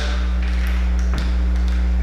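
Steady low hum with a few faint clicks.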